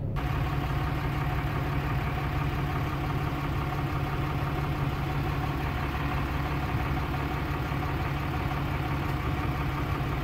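A vehicle engine idling steadily: a constant hum with several held tones and no change in speed.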